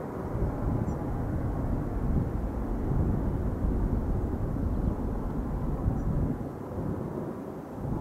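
Jet engines of a departing Ryanair Boeing 737 climbing away after takeoff: a steady, distant rumble that eases slightly near the end.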